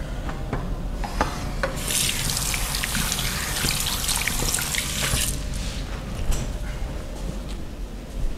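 Water running from a tap into a sink for about three seconds, starting about two seconds in and cutting off, with a few light clicks just before it.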